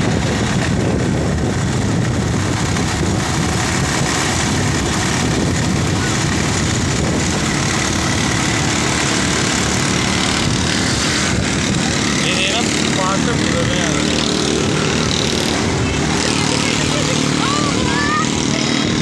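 Steady rush of wind buffeting a phone microphone on a moving motorcycle, over the running of its engine.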